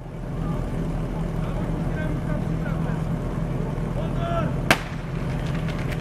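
Portable fire pump's engine running steadily with a low, even drone. A single sharp crack comes a little before the end.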